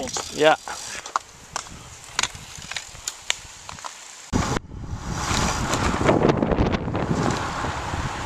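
Wind rushing over the microphone of a camera carried by a rider on a moving road bike, with scattered sharp knocks and a brief voice at the start. About four seconds in the sound cuts and comes back louder and denser: wind and road noise at riding speed.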